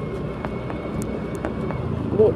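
Motor scooter running while being ridden, a steady low engine hum mixed with road and wind noise.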